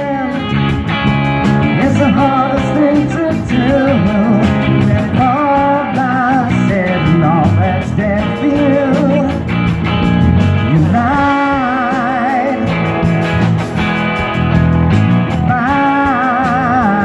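Live rock band playing: electric guitar, bass guitar and drums, with singing over them.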